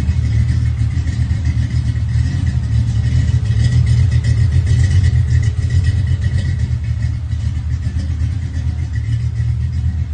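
Ford Mustang's engine idling with a deep, steady rumble that swells slightly a few seconds in.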